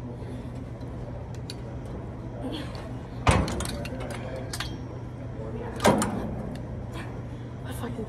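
Two loud metal clanks from a gym cable machine's weight stack, about two and a half seconds apart, over a steady low hum.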